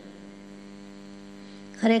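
Steady electrical mains hum in the audio, a low buzz with many evenly spaced overtones. A woman's voice comes back in near the end.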